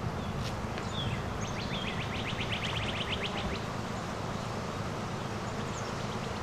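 A wild bird sings a fast trill of short down-slurred notes lasting about two seconds, after a few single chirps, over a steady low outdoor rumble.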